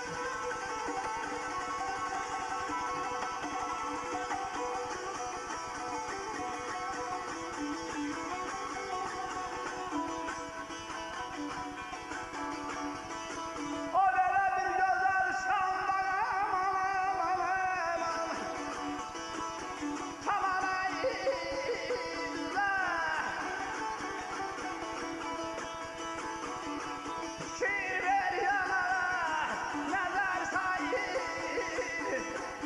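Azerbaijani ashiq saz played with steady plucking, on its own for about the first half. About halfway in, a man's voice comes in loudly, singing ornamented phrases over the saz, with phrases that slide down in pitch near the end.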